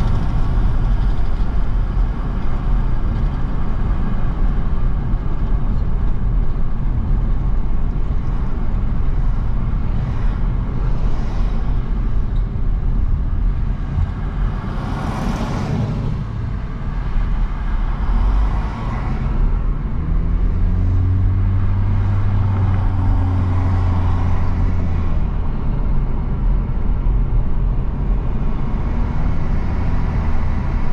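Road and engine noise heard from inside a moving car: a steady low rumble of tyres and engine, with a few swells of passing traffic around the middle. About two-thirds of the way through, a low engine hum comes up for several seconds.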